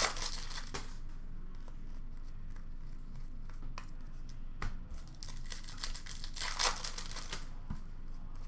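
Hockey card pack wrappers being torn open and crinkled, with cards handled and shuffled between the rustles. The loudest rustling bursts come at the start and again about six and a half seconds in, with a few light clicks in between.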